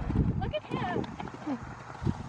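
Hoofbeats of a ridden thoroughbred horse moving over arena sand: dull thuds, the heaviest in the first half second.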